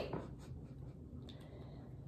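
Faint sniffing at a lip balm held close to the nose, over quiet room tone.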